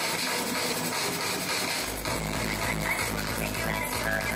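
Electronic music from a live set, a dense layered texture; a deep bass comes in about two seconds in.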